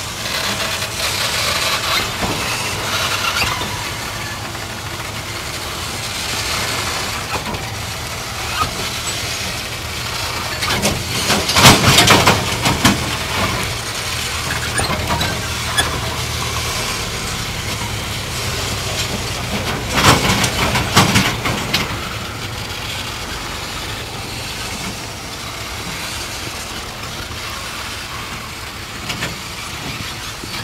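Loaded coal wagons of a narrow-gauge (900 mm) steam-hauled train rolling slowly past with a steady rumble. Twice, around the middle and again about two-thirds of the way through, loud metallic screeching and clanking from the wagons' wheels and couplings stands out.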